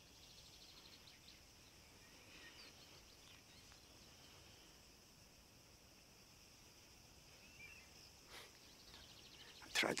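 Quiet countryside ambience: a faint, high insect trill runs steadily, with a brief bird chirp near the end. A man's voice begins just before the end.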